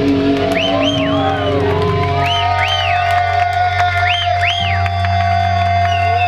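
Electric guitar and bass amplifiers left ringing at the end of a live punk rock song: a steady feedback tone over a low amp hum, with high squeals that rise and fall in pairs, and some crowd cheering.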